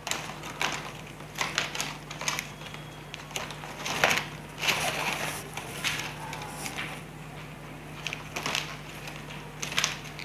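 Plastic strapping strips rustling and crinkling in irregular short bursts as they are pulled and threaded by hand through a woven strap basket, over a faint steady low hum.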